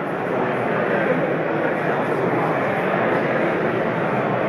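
Steady background noise of a large hall, with an indistinct murmur of voices.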